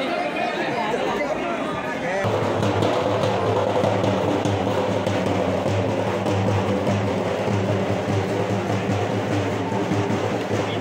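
Crowd of men talking over one another. From about two seconds in, music with a steady low hum comes in under the crowd voices.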